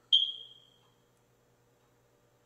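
A single high-pitched ding: sharp at the start, then ringing out and fading within about a second.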